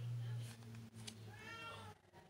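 A cat meows once, a short call that rises and falls in pitch about one and a half seconds in, over a steady low hum.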